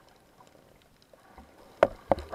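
Faint hiss, then near the end a sudden loud knock followed by rough water noise, picked up by an action camera in its waterproof housing underwater.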